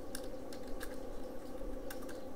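Computer keyboard being typed on: a handful of separate keystrokes clicking over a faint steady background hum.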